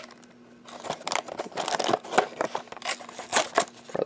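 Small cardboard Lego box being pushed open at its tab: after a quiet moment, about a second in, a run of irregular clicks, creaks and rustles of the card.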